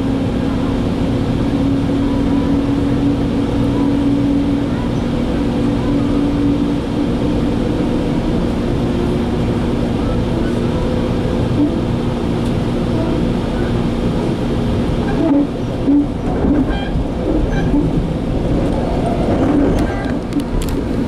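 Commuter train in motion heard from inside the passenger coach: a steady rumble of wheels on the rails with a droning hum under it. Short irregular sounds come and go in the last few seconds.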